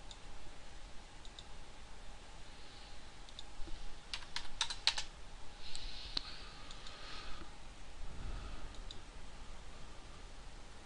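Scattered clicks from a computer mouse and keyboard, with a quick run of five or six clicks about four to five seconds in, over faint room hiss.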